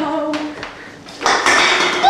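A voice draws out the end of a word. Then, just over a second in, a loud harsh crash starts suddenly and keeps on as a running student falls.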